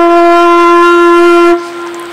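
Bansuri (bamboo transverse flute) holding one long steady note, which drops away to a faint tail about a second and a half in.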